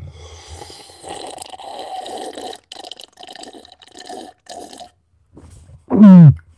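A man drinking from a cup held close to the microphone: a run of gulps and liquid noise, breaking into shorter swallows and stopping about five seconds in.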